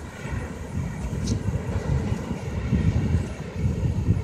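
Wind buffeting the microphone: an uneven low rumble that rises and falls throughout, with a fainter hiss above it.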